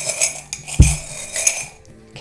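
Small metal charms clinking and jingling together as they are handled, with one low thump a little before a second in.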